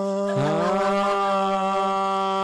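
Male a cappella voices holding a sustained sung chord: one note held steady, a second voice sliding up into its note about a third of a second in.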